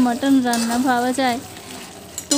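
Goat meat and potatoes sizzling in spice paste in a steel kadai as they are stirred: the masala-frying (kosha) stage of a mutton curry. Over it a woman's voice holds long, even notes, loudest in the first second and a half.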